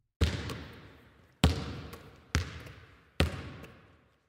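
A basketball bouncing four times, about a second apart. Each bounce is a sharp thump followed by a long echoing tail, as in a large empty gym.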